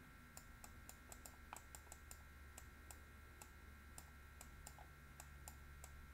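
Near silence with faint, irregular clicks, a few a second, over a low steady hum: the clicks of an equation being handwritten onto a computer screen.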